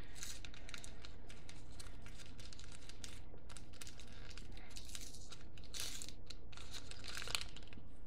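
Wrapping on a tiny gift package crinkling and tearing as fingers work at it: a dense, irregular run of crackles and small rips. The package is stubborn to get open.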